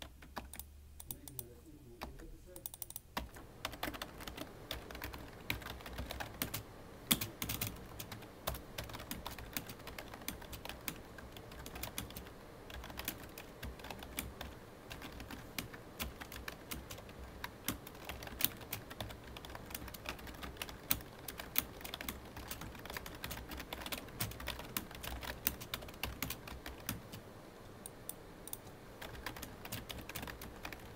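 Fast typing on a computer keyboard, a continuous clatter of key presses. The first few seconds hold only a few scattered keystrokes, then the typing runs dense and unbroken.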